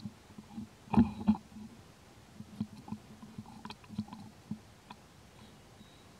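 A macaque drinking milk from a carton: a run of short wet gulping and sucking sounds with little clicks and taps of the carton, loudest in a pair about a second in.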